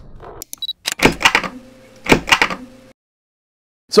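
Title-sequence sound effects: a few quick clicks, then two sharp hits about a second apart, each with a short ringing tail.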